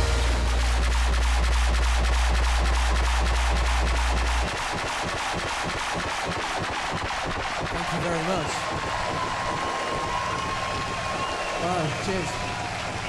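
A band's held low closing note that cuts off about four and a half seconds in, with a large crowd applauding and cheering through it and on after it.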